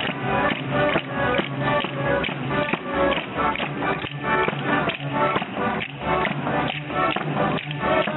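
Folk dance music: tambourines beating a fast, steady rhythm under a sustained melody line.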